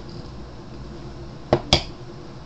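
Two sharp clicks about a fifth of a second apart, near the end, from a tobacco pipe being handled and knocking against something hard.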